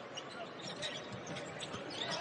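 Basketball arena crowd noise during play, with a basketball bouncing on the hardwood court and brief high squeaks scattered through it.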